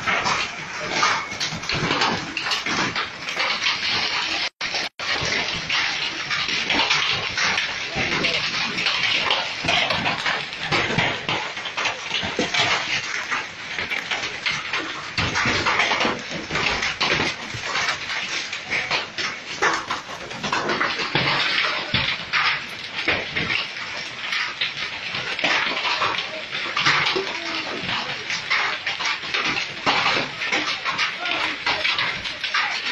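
Large hailstones falling hard and hitting cars, pavement and roofs as a dense, continuous clatter of countless small impacts. The sound cuts out twice briefly about four to five seconds in.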